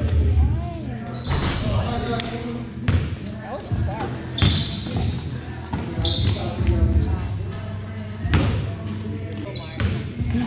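Basketball being dribbled and bouncing on a gym floor, with sneakers squeaking and players shouting during a game, all echoing in a large gym.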